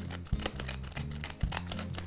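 Hand-twisted pepper mill grinding black peppercorns: a run of irregular, rapid crackling clicks as it is turned.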